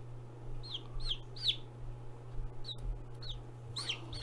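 Rhode Island Red/ISA Brown chick, about two and a half days old, peeping while held in the hand: about six short, high peeps in irregular clusters.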